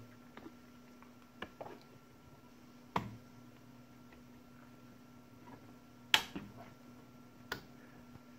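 A few sharp, isolated clicks, four or so spread across the stretch, over a faint steady hum.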